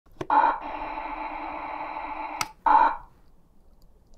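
An electronic radio-style tone. A click, a steady buzzing tone for about two seconds, another click, then a short burst of the same tone.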